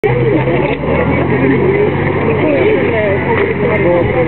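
Crowd voices chattering over a steady low engine hum, as from a vehicle idling close by.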